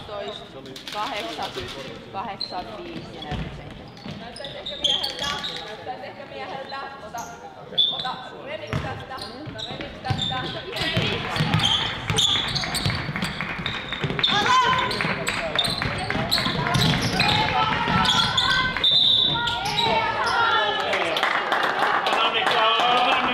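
A basketball bouncing on a wooden gym floor during play, with voices calling out that grow louder and more constant about halfway through.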